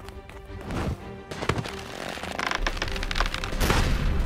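Cartoon soundtrack music with held tones and several sharp percussive hits, growing louder over the last second or so.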